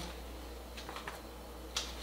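Pages of a paper owner's manual being flipped and handled: a few soft ticks and rustles, the sharpest near the end, over a low steady hum.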